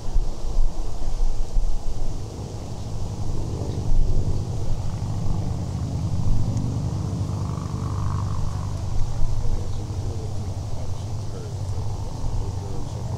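A low engine rumble that swells through the middle and eases off toward the end, under faint background voices.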